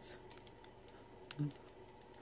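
Faint, sparse clicks of hard plastic parts as a Transformers toy figure is handled and its parts are moved during transformation. A brief murmur of voice comes about a second and a half in.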